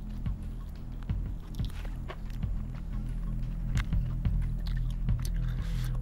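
Low, steady background music, with scattered short clicks and smacks of a man biting into and chewing freshly cooked camel meat.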